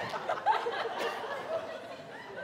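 A live comedy audience laughing, dying away toward the end.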